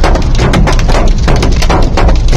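Sound effect of a storm battering a car's windshield: a rapid, irregular run of hard knocks over a deep rumble.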